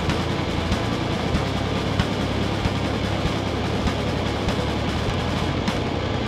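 Live rock band playing loud and dense: electric guitars, bass guitar and drums, with steady drum hits and no vocals in this passage.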